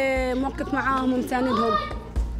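A woman speaking Arabic in an animated, fairly high-pitched voice.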